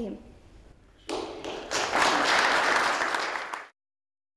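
A room of guests applauding, beginning about a second in and swelling a moment later, then cut off abruptly by an edit.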